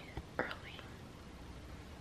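A woman whispering a word, followed by a pause with only faint steady room hiss.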